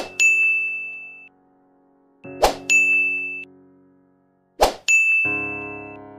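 Editing sound effects: three times, a quick swish followed by a bright bell-like ding that rings for about a second, about two and a half seconds apart. A soft piano chord comes in near the end.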